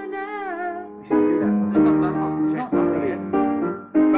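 Piano chords struck one after another, each left to ring and fade, on a rough recording of a songwriting session. A high voice sings a short wavering phrase over the first chord before the next chords come in.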